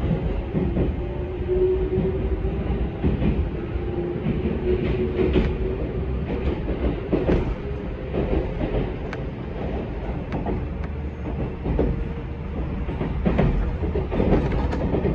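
Electric commuter train heard from inside the car as it pulls out of the station and gathers speed. The motors give a faint whine that climbs slowly in pitch over a low rumble, and the wheels clack irregularly over rail joints and points.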